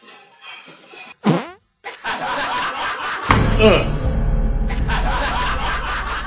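A fart: a long, low rumble starting about three seconds in and fading out slowly, over background music.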